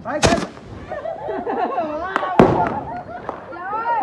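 Bottle rocket launching from a glass bottle with a short hissing whoosh, then a crack and a louder bang about two seconds later as it bursts in the air.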